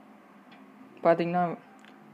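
A man's voice: one short, drawn-out voiced syllable about a second in, over a faint steady hum, with a couple of faint ticks.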